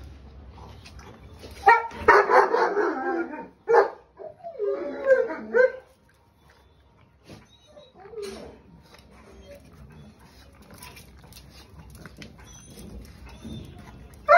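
Pug barking and yelping in a few loud bursts during the first half, then going quiet.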